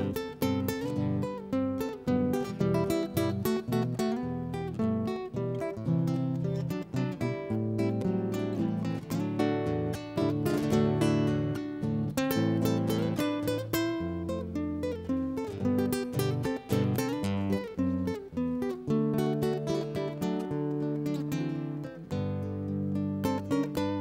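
Acoustic guitar playing the instrumental interlude of a chamamé song, a steady run of plucked and strummed notes with no singing.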